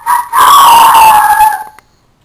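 A loud, drawn-out howling call: a short burst, then one long note lasting about a second and a half that falls slightly in pitch and cuts off.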